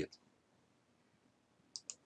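Two quick clicks close together near the end, a computer mouse button pressed and released, over quiet room tone.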